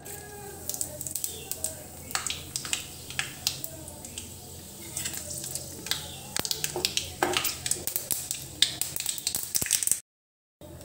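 Panch phoron (Bengali five-spice seeds) sizzling and crackling in hot oil in a kadhai, a steady hiss with many irregular sharp pops as the seeds fry.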